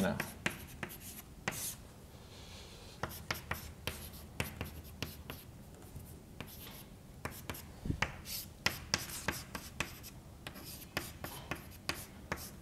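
Chalk writing on a chalkboard: a run of short taps and scratches as symbols are written, with one heavier knock about eight seconds in.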